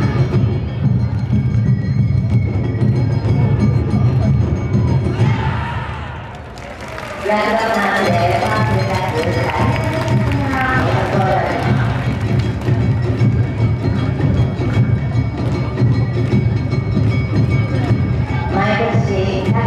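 Awa Odori festival music: a hayashi band of drums and percussion playing the brisk two-beat dance rhythm, with voices calling and chanting over it. About six seconds in the music dips briefly, then comes back with the voices strongest for a few seconds.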